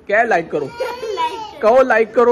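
Family voices talking in high, excited tones, with a baby crying through the middle of the stretch.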